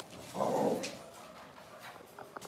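A dog barking once, a loud outburst of about half a second that starts just under half a second in.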